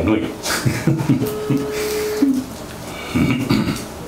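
A single steady telephone ring-back tone, about one second long, starting about a second in, from a mobile phone held to the ear while a call is placed. Low voices talk in the room around it.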